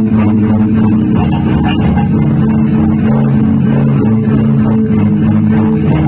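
Electric bass guitar played fingerstyle in a jazz-funk groove, a run of held and repeated low notes.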